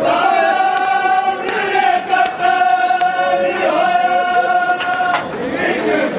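A crowd of mourners chanting a mourning lament together in long held notes that break off and start again every second or two, with a few sharp smacks among the voices.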